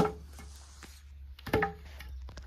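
Wooden threshing flail (manguá) being swung and striking. There is a sharp knock at the start and a second wooden knock, with a brief ring, about a second and a half in.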